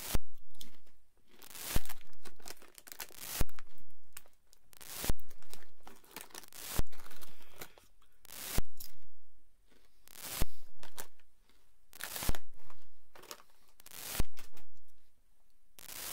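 Crunchy taco-seasoned corn chips being chewed close to the microphone: a loud crunch about every second and a half to two seconds, each one trailing off before the next.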